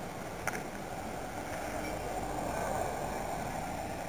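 Steady vehicle running noise, swelling slightly midway, with one short click about half a second in.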